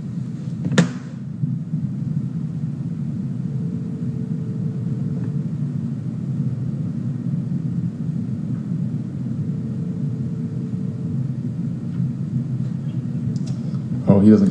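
A phone ringback tone sounds faintly twice, each ring about two seconds long and the two about six seconds apart: an outgoing call ringing unanswered. Under it runs a steady low rumble, and there is a sharp click about a second in.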